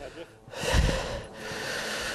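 Heavy breathing close to the microphone: two long, noisy breaths, the first about half a second in and the second following straight after.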